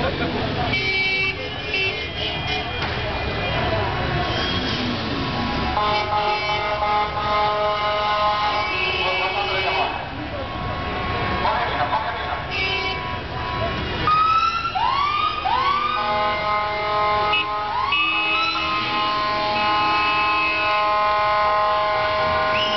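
Many car horns honking at once in a celebratory street motorcade: long held tones that overlap and change. From about 14 seconds in, a siren whoops upward several times over the horns, with crowd voices and passing traffic underneath.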